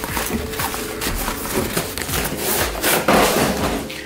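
Cardboard box being opened by hand: continuous rustling and scraping of cardboard and packaging, with a few light knocks, as a tripod in its fabric carry bag is pulled out.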